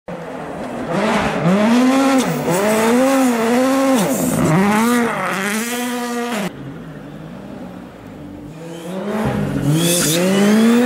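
Rally car engine revving hard, its pitch repeatedly rising and falling with throttle and gear changes, until it cuts off abruptly about six and a half seconds in. After a quieter stretch, another rally car's engine rises as it approaches near the end.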